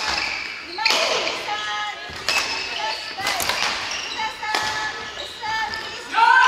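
Badminton rally: rackets strike the shuttlecock about five times, roughly a second apart, with court shoes squeaking on a wooden gym floor between the hits.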